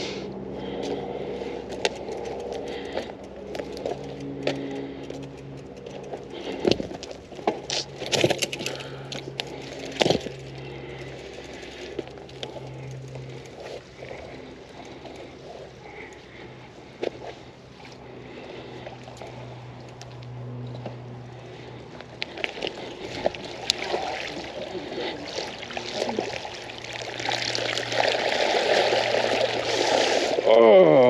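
Creek water splashing and trickling as a bike is taken through a creek, with scattered knocks and rattles. The water noise grows louder near the end.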